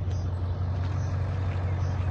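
An engine idling steadily, a constant low hum.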